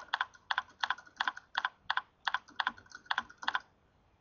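Typing on a computer keyboard: a quick, uneven run of keystrokes that stops about half a second before the end.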